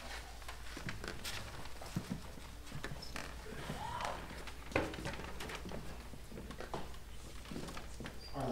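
Quiet stage noise with no music: scattered light footsteps, knocks and rustles on a wooden stage as the conductor crosses it and the string players shift their instruments and chairs.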